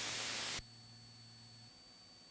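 Radio static hiss on the aircraft's communications audio. It cuts off suddenly about half a second in, leaving a faint steady hum and a thin high tone.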